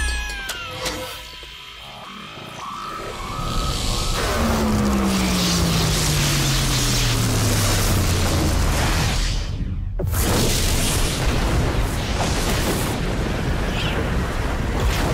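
Dramatic cartoon score mixed with sound effects. A low tone slides slowly downward over several seconds, then the sound cuts out briefly and returns as a loud wash of noise.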